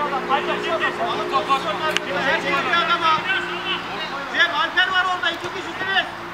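Men's voices talking and calling out over one another, with a steady low hum under them for the first few seconds and one sharp knock about two seconds in.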